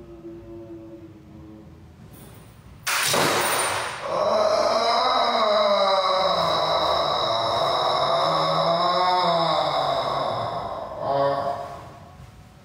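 A person's wordless vocalising: a sudden loud, harsh burst about three seconds in, then a long moan whose pitch wavers up and down, ending a little before another short vocal outburst near the end.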